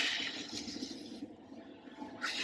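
A breath blown onto a twig of dry dead leaves held at the mouth: a soft hiss that starts at once and fades out over about a second.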